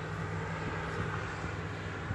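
A steady low mechanical hum over faint outdoor background noise.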